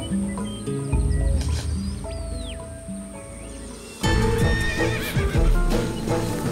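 Horses neighing and hooves clopping under dramatic score music. About four seconds in, the sound turns suddenly louder as the horses come close.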